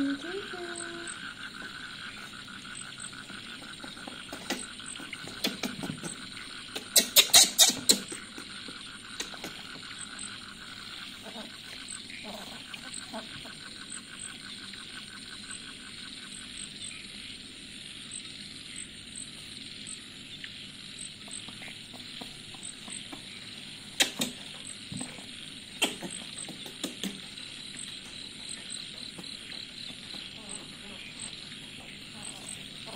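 Disposable diaper being handled on a baby monkey: plastic crackling and tab rustles, loudest in a cluster about seven seconds in and again as single snaps near 24 and 26 seconds. A short squeak at the very start and a steady high pulsing chirp in the background that fades about halfway through.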